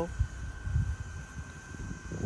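Wind buffeting the microphone as an uneven low rumble, with one brief bump shortly after the start. A faint steady high whine runs underneath.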